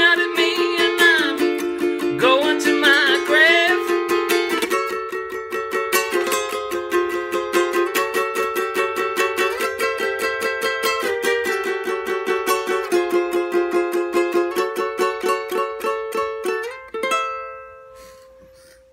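Ukulele strummed in a steady chord rhythm, with a man singing over the first few seconds. The strumming then carries on alone and ends on a final chord that rings out and fades near the end.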